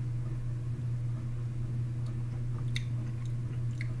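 A person sipping juice from a mug and swallowing, with a few small wet mouth clicks in the second half. A steady low hum runs underneath.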